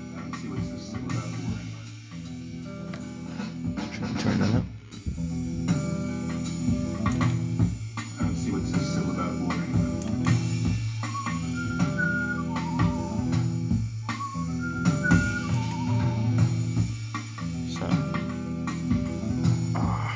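Looped music playing back from the Quantiloop looper, a repeating guitar-and-drums loop. From about a second after the middle, short whistled notes are laid over it, triggered from a Whistle pad.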